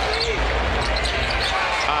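Basketball being dribbled on a hardwood court over the steady murmur of an arena crowd.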